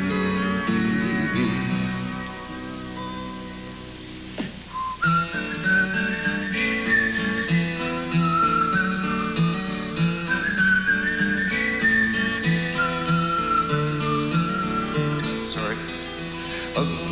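Live folk-rock band playing an instrumental break: strummed acoustic guitar and bass chords under a high, sliding lead melody line. The music eases off and gets quieter, then the lead melody comes in about five seconds in and carries the rest of the break.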